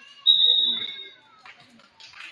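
Referee's whistle blown once: a single steady, high blast lasting under a second. Voices murmur in the gym around it.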